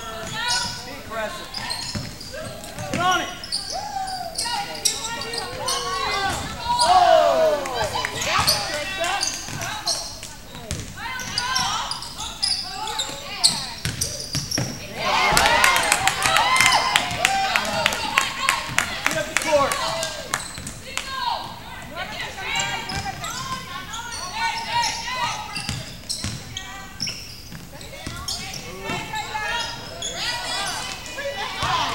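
Basketball game sounds in a large gym: a basketball being dribbled on the hardwood court in repeated sharp bounces, thickest about halfway through, under indistinct shouts from players and spectators.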